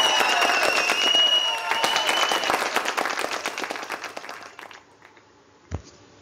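Recorded studio-audience applause with cheering, greeting a contestant's passing to the next stage of a talent show; it fades out over about four seconds.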